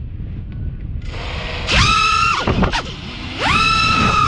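FPV racing quadcopter's brushless motors spooling up in two throttle punches as it lifts off: a high whine that climbs steeply, holds for about half a second, drops away, then climbs again near the end.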